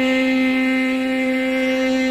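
Carnatic classical music: a long note held perfectly steady on one pitch by the singer, with the violin sustaining the same pitch, over the tanpura drone.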